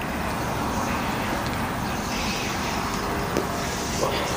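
Steady rushing noise of passing road traffic, with a faint click about three and a half seconds in.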